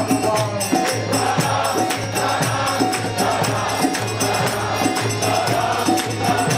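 Group kirtan: many voices chanting together, with jingling hand cymbals keeping a steady beat.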